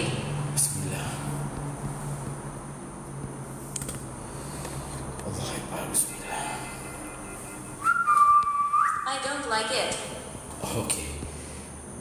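A low steady hum, then about eight seconds in a loud, steady, whistle-like high tone lasting about a second and stepping slightly up in pitch partway, followed by faint, broken voice-like sounds.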